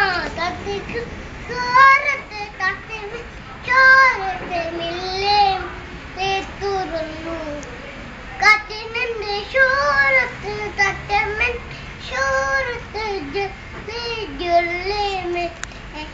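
Young boy singing a song unaccompanied, in short phrases with held, wavering notes and brief pauses between them; he stops singing near the end.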